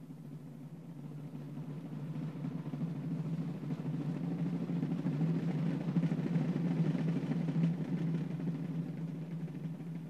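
A rank of military field drums with wooden hoops and rope tension, played in a continuous drum roll that swells steadily to its loudest around two-thirds of the way through, then begins to fade.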